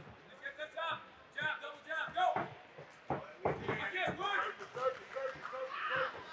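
Voices calling out around a boxing ring during an exchange, with a few sharp impacts of gloved punches landing near the start and about three seconds in.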